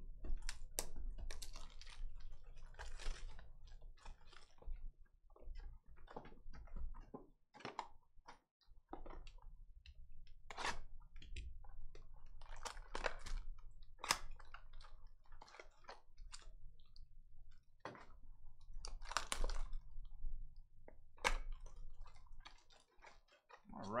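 A cardboard trading-card hobby box being opened by hand and its cellophane-wrapped mini boxes handled. There are many sharp clicks, scrapes and tearing sounds, with several longer stretches of crinkling plastic wrap.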